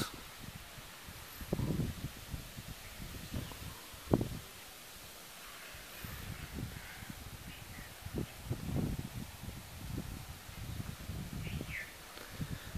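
Handling noise from a handheld camera being moved: low, irregular rumbles with a sharp knock about four seconds in. A faint bird chirp near the end.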